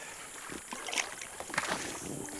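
Water sloshing and splashing against the side of an inflatable raft as a large tarpon is held alongside, with a few faint knocks about half a second, one second and a second and a half in.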